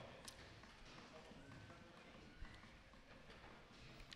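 Near silence in a large hall: faint scattered footsteps and light knocks, with one short low thump about two and a half seconds in.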